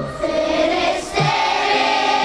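Choral music: a choir singing long held notes over a low bass line.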